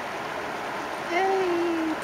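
A steady outdoor hiss, then about halfway through a man's voice comes in with one drawn-out, slightly falling vowel.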